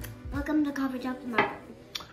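Ceramic coffee mug set down on a glass tabletop, clinking about halfway through and again at the end, after a short hum.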